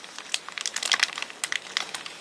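A white paper wrapper around a soft bread roll crinkling as it is handled, in a close run of small, irregular crackles and ticks.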